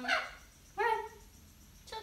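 A conure (parrot) giving three short calls: one just at the start, one a little under a second in and a brief one near the end.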